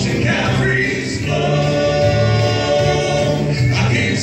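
Male gospel quartet singing in harmony into microphones, holding one long chord from about a second in until just before the end.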